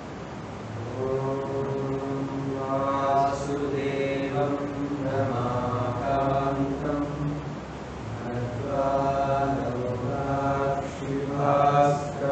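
A voice chanting a mantra in long, evenly pitched phrases, with short pauses between them.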